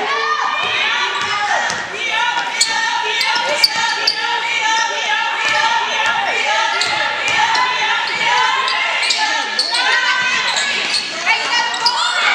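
Live court sound of a women's basketball game: a basketball bouncing on the hardwood floor amid players' and spectators' voices, with sharp clicks now and then, echoing in a large gym.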